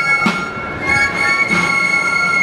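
Basque folk pipe-and-drum music played in the street: high wind instruments hold long, steady notes while a drum is struck twice.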